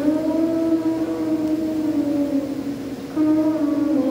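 Church congregation singing a hymn in long held notes. One note sags slightly, then a new note begins about three seconds in.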